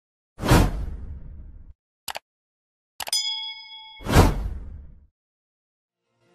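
Edited transition sound effects: a whoosh, a brief double click, then a bell-like ding that rings for about a second, followed by a second whoosh.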